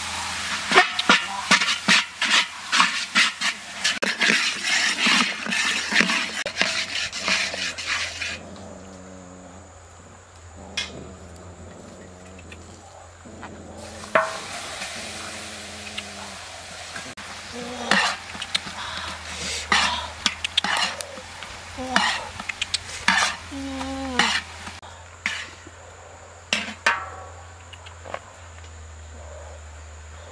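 Meat sizzling and being stirred in a large metal wok, with dense crackling for the first eight seconds or so. After that come scattered metal clinks and scrapes of a ladle and pot against the wok.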